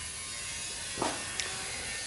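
Low steady background hiss, with a soft brief sound about a second in.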